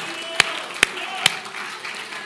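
Sharp hand claps in a steady beat, a little over two a second, stopping after three, over the voices of a congregation praising.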